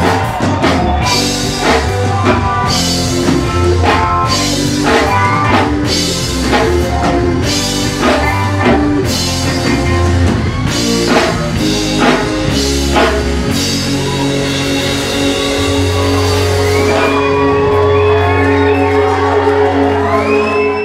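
Live band playing: drum kit strikes over bass and guitar, then settling into a long held chord about two-thirds of the way through, with sliding notes over it near the end.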